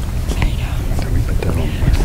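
Handheld microphone being handled as it is passed from one person to another: a steady low rumble from the mic body with scattered small knocks and clicks, and faint low voices behind it.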